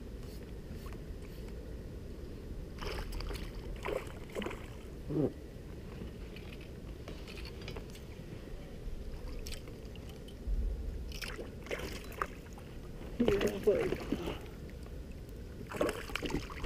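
Quiet background on a small boat on the water: a low steady rumble throughout, with a few faint, brief snatches of voices about three to five seconds in and again near the end.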